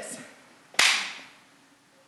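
A single sharp hand clap about three-quarters of a second in, ringing on in a large reverberant room for about half a second as a beat demonstration.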